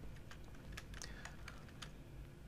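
Faint, irregular tapping on a computer keyboard: about ten light clicks of the keys.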